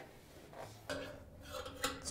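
Faint handling noise on a dryer's drum and belt: a short scrape about a second in and a light click near the end.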